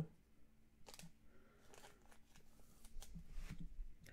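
Faint handling noises: a few soft clicks and light rustles as a trading card is handled and set aside.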